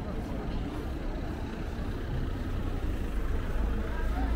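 Busy street ambience: a low rumble of vehicle traffic, swelling toward the end, under indistinct voices of passers-by.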